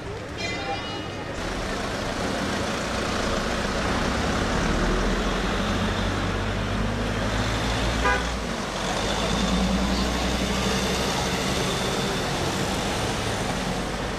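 A convoy of vans and SUVs driving past with a steady low engine rumble. A short horn toot sounds about half a second in.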